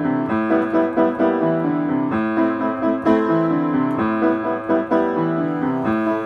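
Solo piano playing a song's introduction: a steady flow of chords and broken-chord notes.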